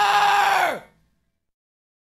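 The last held note of a punk rock song sags in pitch and cuts off a little under a second in, followed by silence in the gap between tracks.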